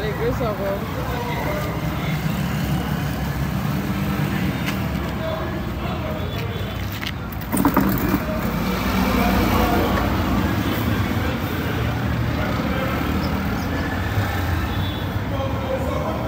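Steady low rumble of outdoor background noise, with a single sharp knock about seven and a half seconds in.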